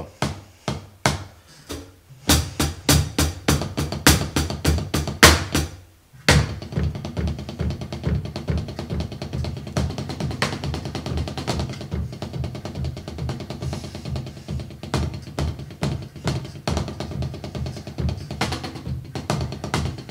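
Snare drum struck with sticks in a push-and-pull stroke demonstration: a few separate strokes, then from about two seconds in a fast, even stream of strokes that breaks off briefly near six seconds and resumes as a dense, steady roll.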